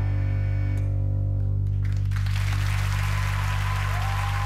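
The final chord of a live rock band's song ringing out over a held low bass note, the upper notes dying away within the first two seconds. Audience applause rises from about halfway.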